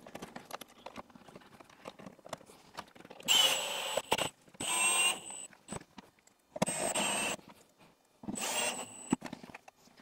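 Cordless drill-driver running in four short bursts of about a second each, driving screws into the headlight surround panel, after a few light handling clicks.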